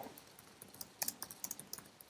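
Faint typing on a computer keyboard: an irregular run of keystrokes, sparse at first and quicker from about a second in.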